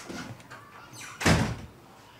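A wooden door slammed shut once, a single loud bang about a second in that dies away over about half a second.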